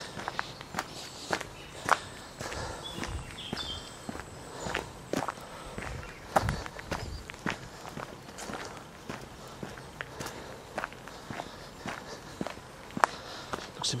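Footsteps of a person walking at a steady pace along a dirt woodland path, about two steps a second.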